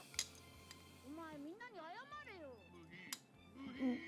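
Dubbed-down anime episode audio playing quietly: Japanese dialogue in a high, wavering character voice over background music, with two short clicks, one just after the start and one about three seconds in.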